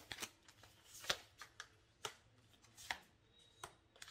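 Tarot cards being handled: a few faint, irregular snaps and flicks of card stock.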